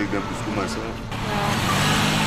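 A car passing on the street, its tyre and engine noise swelling in about a second in and staying up.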